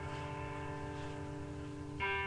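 Soundtrack music from a video played through room speakers: a held chord of steady notes over a low hum.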